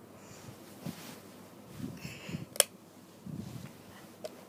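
Soft handling and rustling noises, with one sharp light-switch click about two and a half seconds in as the room lights are switched off.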